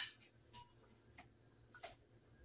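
A metal ladle tapping against cookware as food is scooped out: one sharp click at the start, then three fainter clicks, roughly every 0.6 s.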